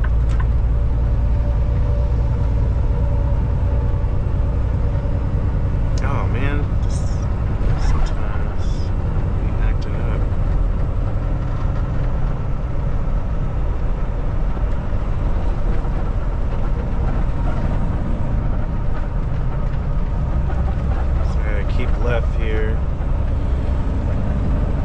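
Steady low drone of a Kenworth T680 semi truck's engine and road noise, heard from inside the cab while cruising at highway speed.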